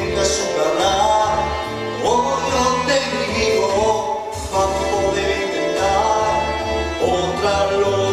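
A man singing a sustained, wavering melody over instrumental backing music.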